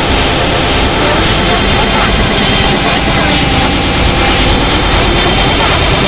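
Children's song played backwards through heavy distortion effects: a loud, steady, noisy wash with garbled, unintelligible singing buried in it.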